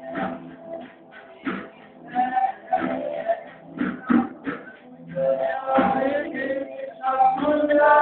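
A small amateur band playing live in a room: drum kit hits keeping the beat under electric guitar, with a boy singing into a microphone in phrases over it.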